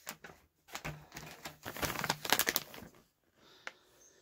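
Plastic snack pouch of bacon jerky crinkling as it is handled and turned in the hand: irregular crackles for about three seconds, then a single click near the end.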